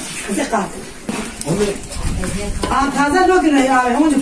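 People talking, with one voice loudest and drawn out over the last second and a half.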